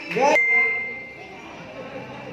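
A single ding: one clear bell-like tone that starts suddenly about a third of a second in and rings out, fading over about a second.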